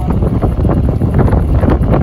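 Wind buffeting the microphone of a moving golf cart, a loud steady rushing with irregular gusts, and the cart's low rumble as it drives over the grass.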